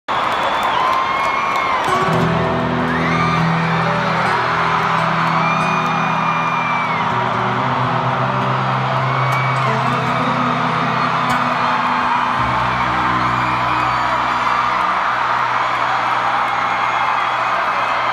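Live band music with long held chords that change every few seconds, heard from within a large concert crowd that whoops and cheers over it.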